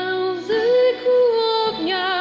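A woman singing a slow Polish hymn to the Holy Spirit in long held notes with vibrato, over held low accompaniment notes; the voice breaks off briefly near the end.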